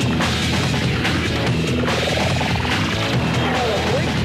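Loud rock backing music with a steady drum beat, with a rising glide in the middle.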